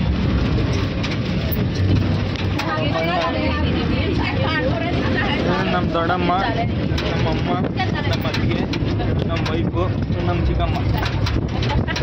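A moving goods vehicle running steadily, with road and wind noise, heard from its open-sided, canopied cargo bed; women's voices talk over it.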